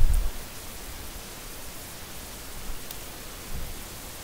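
Steady hiss of room tone and recording noise in a lecture room, with a short low thump right at the start and a faint tick about three seconds in.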